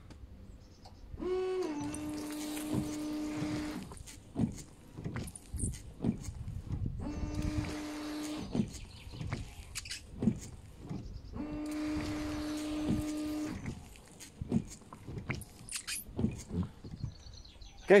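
Land Rover Freelander's windscreen washer pump run three times, each for about two seconds: a steady electric motor whine that starts a little higher and quickly settles, with washer fluid hissing from the new wiper-arm jets. Light clicks and knocks between the sprays.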